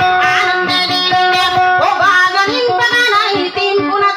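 Dayunday song: a woman singing through a microphone over a plucked string accompaniment with a steady pulse, her voice sliding up about two seconds in.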